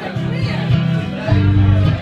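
Acoustic guitar played live, chords strummed and ringing out, with a fuller chord held in the second half.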